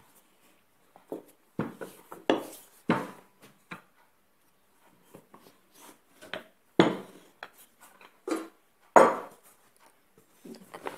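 Wooden rolling pin rolling out a thin sheet of dough on a wooden tabletop: irregular rolling strokes and knocks, the two loudest sharp knocks coming about two-thirds of the way through and near the end.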